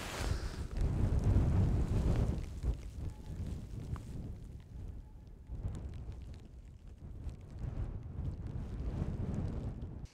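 Wind buffeting the microphone in gusts, a low rumble that swells and fades, loudest about a second or two in, and cuts off suddenly at the end.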